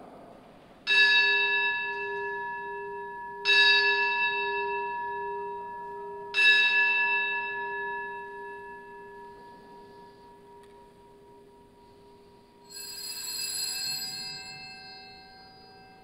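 A bell rung at the elevation of the host during the consecration of the Mass: three strikes a little under three seconds apart, each ringing on and slowly fading, then a higher-pitched ring near the end.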